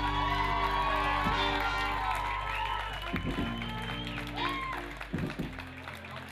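Live band music: a trumpet plays held, bending notes over the band's bass and drums, the music getting somewhat quieter in the second half.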